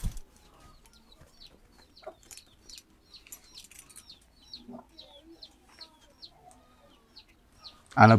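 Faint bird chirps, a few each second: short, high notes that fall in pitch, typical of a village flock of chickens. A brief thump at the very start is the loudest sound.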